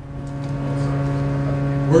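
A steady, low, single-pitched machinery hum fades in over about a second and then holds level. It is the background drone of a compartment aboard an aircraft carrier.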